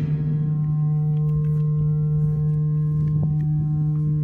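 Feedback from a metal cistern picked up by a contact microphone and played back through an amplifier beneath it: one loud, steady low tone held throughout, with several fainter, higher ringing tones from the metal's resonances above it. A few light metallic ticks sound over it about a second in and again past the three-second mark.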